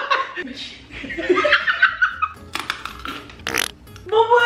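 A man and a woman laughing, then a few sharp clicks and a short hissing swoosh near the end.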